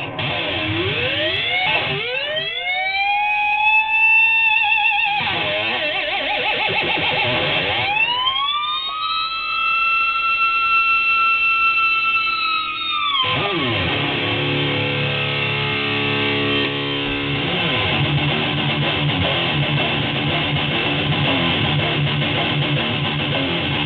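DBZ Barchetta electric guitar played with distortion through effects pedals into a Kustom KG112FX combo amp. Two long held notes slide up in pitch and sustain, with faster playing between them, then a run of repeating low notes and a rhythmic riff near the end.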